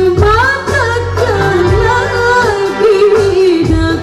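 A woman singing a qasidah song in gambus style, her voice sliding and ornamenting around each held note, over keyboard and hand-drum accompaniment.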